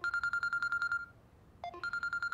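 Telephone ringing with a high, fast electronic trill: one ring of about a second, a short pause, then the next ring starting near the end.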